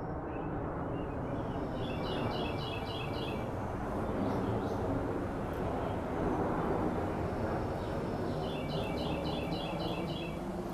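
A small bird chirping in a quick repeated run about two seconds in, and again near the end, over a steady low rushing noise of an outdoor field recording.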